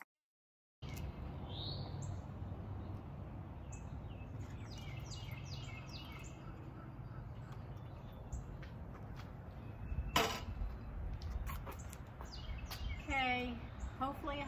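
Outdoor background of a steady low rumble, with birds chirping several times in short falling notes in the first half. A single sharp knock about ten seconds in is the loudest sound.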